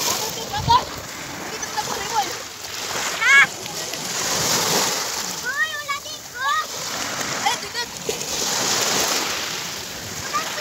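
Small waves breaking and washing up a pebble shore, the surf swelling twice, with children's short high-pitched shouts and squeals as they splash in the shallows.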